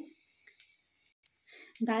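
Faint, steady sizzling of cumin seeds and a bay leaf in hot mustard oil in an iron kadhai, heard in a gap in the talk.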